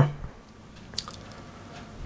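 A quiet pause with faint hiss and one short, sharp click about halfway through.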